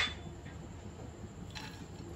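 Faint steady hiss over a quiet pan, with a soft light patter about one and a half seconds in as chopped pistachio slivers start to drop into a non-stick kadhai with warm ghee.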